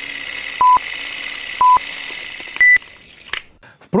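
Film-leader countdown sound effect: two short beeps of one pitch about a second apart, then a single higher beep, over a steady hiss that fades out just under three seconds in.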